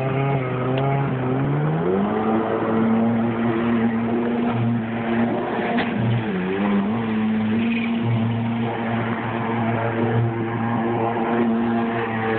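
Watercraft engine running at speed, climbing in pitch about a second and a half in and then holding a steady higher note, with a brief drop and recovery a little past the middle. A steady rush of water and wind runs underneath.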